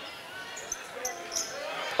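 Basketball being dribbled on a hardwood gym court during live play, with faint voices from the gym under it.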